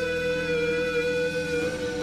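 Live pop-rock band playing an instrumental passage: electric guitars under one long held note that wavers slightly in pitch.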